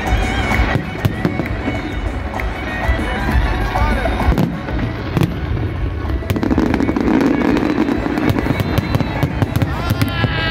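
Aerial fireworks display bursting overhead: a continuous run of bangs and crackles that becomes faster and denser crackling in the last few seconds.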